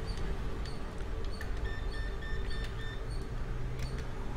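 Workbench background with a steady low hum, faint clicks of a laptop motherboard being handled, and a run of four short high electronic beeps about halfway through.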